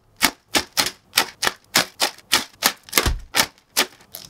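Clear plastic bags of model-kit runners crinkling, in a quick, even rhythm of sharp crackles about three a second.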